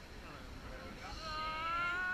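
A person's long, high-pitched yell that starts about halfway in and is held, rising slightly in pitch.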